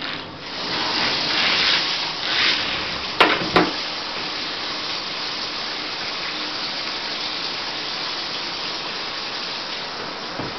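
Water running and splashing in a bathtub while a dog is bathed, louder for the first few seconds, then settling into a steady rush. Two sharp knocks come close together about three seconds in.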